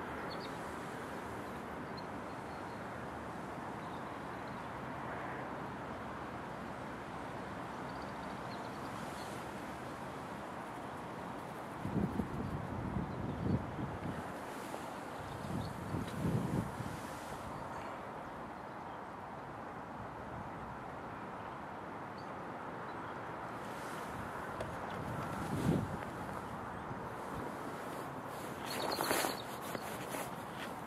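Steady wind noise buffeting the microphone, with leaves rustling. A few short low bumps of movement come around the middle and again near the end.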